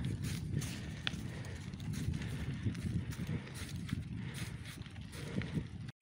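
A loaded touring bicycle rolling over a gravel road: tyres rumbling and crunching, with the bike and its bags rattling in irregular small knocks. The sound cuts off suddenly just before the end.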